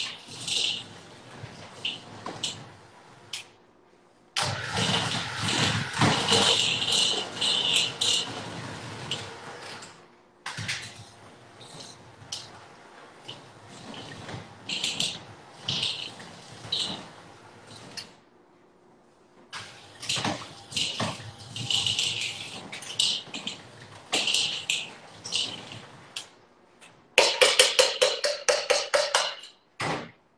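Electric hand mixer working oat-cookie dough in a bowl, run in several stretches with short pauses between them. Near the end comes a fast, even run of knocks, the beaters striking the bowl.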